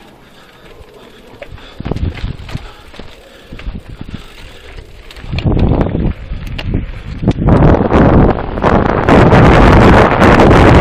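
Santa Cruz Bronson mountain bike rolling slowly over rock, with scattered knocks and rattles of the frame and chain. From about halfway through, wind buffeting on the camera microphone and tyre rumble build as the bike speeds up, loud and continuous over the last few seconds.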